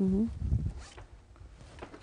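Wire whisk stirring food in a metal saucepan, with a short scraping stir about half a second in, then quieter.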